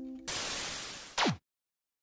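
A held ukulele chord fades out, then a burst of static hiss starts suddenly and dies away over about a second. It ends in a quick downward sweep in pitch, the loudest part, and cuts off suddenly, like an old TV switching off.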